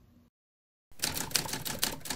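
A brief gap of dead silence, then a rapid clatter of sharp clicks, about eight a second, starting about a second in.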